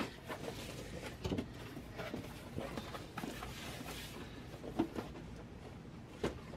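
Cardboard shipping box being handled: flaps pulled and packing tape worked at, with rustling and scraping throughout. A sharp knock comes right at the start and a short thud about five seconds in.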